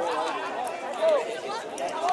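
Several people's voices talking and calling over one another at a football pitch, with a louder call about a second in.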